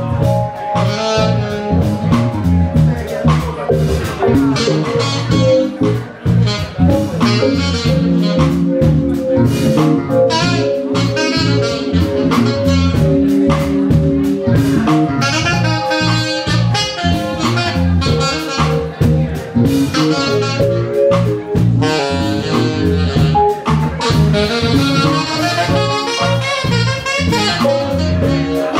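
Live funk-jazz band: a saxophone solos in fast runs over an electric bass groove and drum kit.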